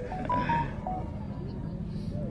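A quick run of short electronic beeps at a few different pitches from a mobile phone, over faint background chatter.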